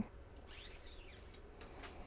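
A steel guitar string (the A string) being fed through a Les Paul–style tailpiece: a brief, thin metallic scraping starting about half a second in and lasting just under a second, followed by faint handling noise.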